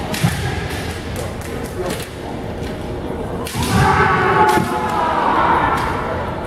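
Kendo bout: sharp knocks of bamboo shinai and stamping feet on a wooden floor in the first two seconds, then a long shouted kiai from about three and a half seconds in, held for about two seconds.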